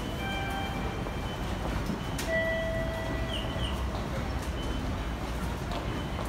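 Train station concourse by the ticket gates: a steady low rumble of the hall and passing commuters, with held electronic tones. One tone sounds for about a second at the start, and a second, longer and lower tone follows a click about two seconds in.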